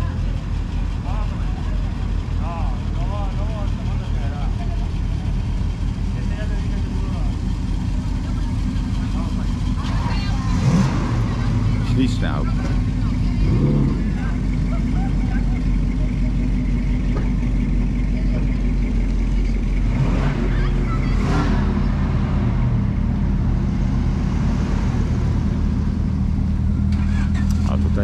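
Several classic and sports cars' engines running at low revs as they pull away, with a Pontiac Firebird 350's V8 driving slowly past and loudest a little before halfway.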